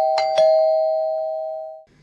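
Two-tone doorbell chime, ding-dong: a higher note then a lower one a fraction of a second apart, rung a second time just after a first ding-dong, its notes ringing out and fading before cutting off near the end.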